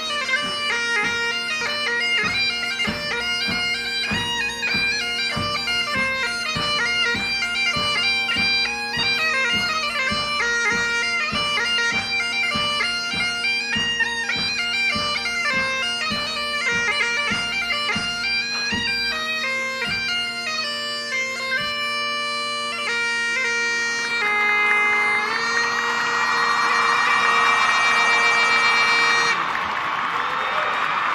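Great Highland bagpipes playing a tune over their steady drones, with a regular thump about twice a second underneath for the first two-thirds. The tune ends on a long held note as crowd applause swells, and the pipes cut off just before the end.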